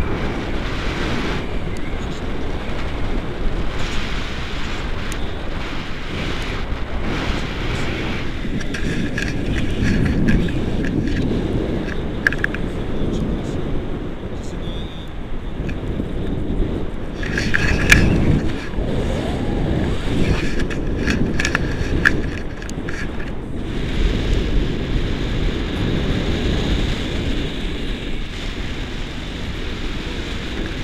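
Wind rushing over an action camera's microphone in flight under a tandem paraglider: a steady low rumble that swells louder around a third of the way in and again a little past the middle.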